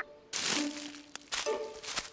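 Cartoon sound effects of characters pushing out through a leafy bush: two short rustling swishes with a small click between them, over soft background music.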